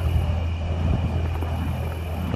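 Burning fire poi whooshing as they are swung in fast circles: a steady low rushing roar of flame moving through the air. A faint steady high-pitched tone runs underneath.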